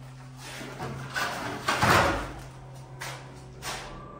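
Old wooden door being pulled open by hand, scraping and rattling, with a heavy knock about halfway through and a smaller bump near the end.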